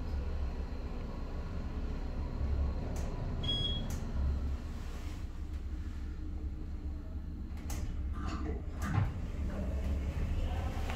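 Otis Hydrofit hydraulic elevator car with a steady low hum in the cab, a short high beep about three and a half seconds in, and a few clicks and a knock near the end.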